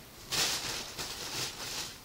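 Rustling and handling noise as plastic-packaged items are rummaged through and a plastic bottle of cleaner is picked up. It starts about a third of a second in.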